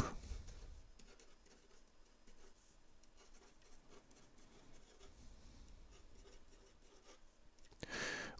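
Faint scratching of a felt-tip pen writing words on paper, in many short strokes.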